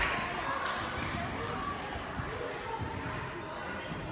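Dull thuds of a gymnast bouncing and landing on a trampoline track, one at the start and several softer ones after, over background voices.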